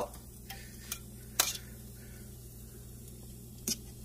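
A metal fork clinking against a stainless steel pot and its lid while picking the scallion and hot pepper out of cooked rice and peas. There are four short clinks, the loudest about a second and a half in.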